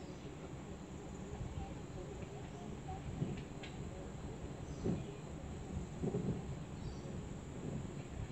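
Outdoor wind rumbling on the microphone, swelling in gusts about five and six seconds in, with a brief faint chirp a little after three seconds.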